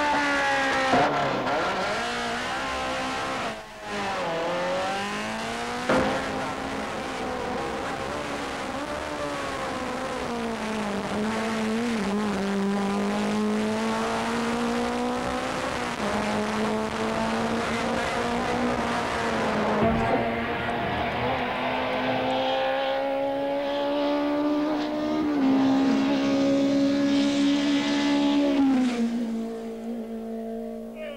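Rally cars' engines running hard up a hillclimb course, one car after another. The engine pitch climbs through each gear and drops back at each shift, with a long steady climb through the middle.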